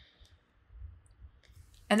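A short pause in a spoken conversation: one faint, sharp click at the start over low room tone, then a voice starts speaking near the end.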